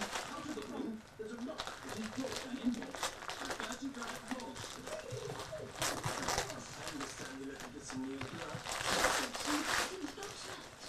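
Wrapping paper crinkling and rustling as a present is unwrapped by hand, in several spells, loudest about six seconds in and again near the end. Quiet voices talk underneath.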